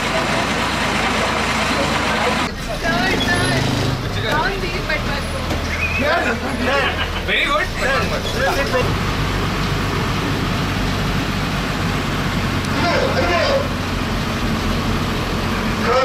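A bus engine running with a steady low hum under general road and cabin noise, with people talking over it at times.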